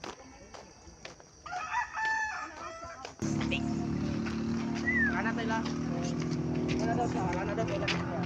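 A rooster crows once, for about a second and a half, starting about a second and a half in. About three seconds in, background music with sustained low notes starts abruptly and carries on.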